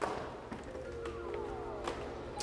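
Faint background music with held notes. Two light clicks, one at the start and one near the end, from a glass French door's handle and latch as it is opened.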